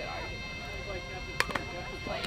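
A softball bat hitting the ball: one sharp crack about one and a half seconds in, over faint voices.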